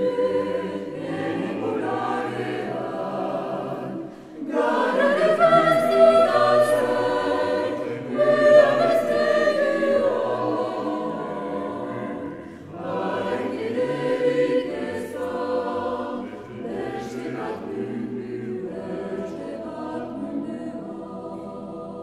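A cappella vocal ensemble singing a Basque song in several voice parts. The phrases are broken by short breaths about 4, 8 and 12 seconds in, swell loudest around the middle, and grow gradually softer toward the end.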